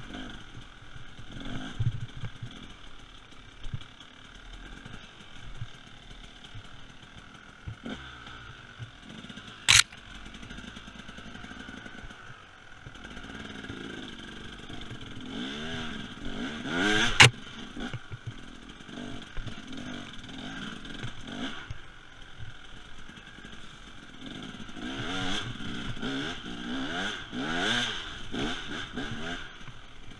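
Husaberg TE300 two-stroke enduro engine heard from the rider's seat, its revs rising and falling in repeated bursts of throttle on a slow, technical woods trail. Two sharp knocks stand out, about ten seconds in and again near the middle.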